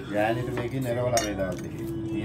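Cutlery and dishes clinking on a plate during a meal, with a sharp clink about a second in and another near the end.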